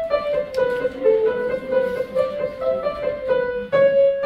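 Soprano section of a choir singing a run of short notes in unison, about three a second, moving up and down in small steps, with piano.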